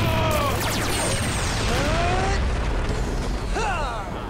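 Film sound effects of a string of explosions booming and crackling, with a few short gliding tones over them near the start, in the middle and near the end.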